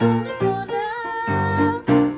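Grand piano playing a run of chords, each struck afresh and left to ring, as song accompaniment.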